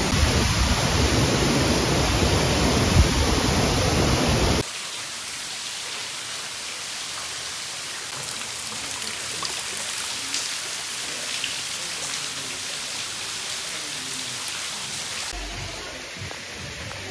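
Steady rush of falling water in a narrow rock canyon, loud for the first four and a half seconds, then cutting suddenly to a quieter, even hiss of water with a few faint drips.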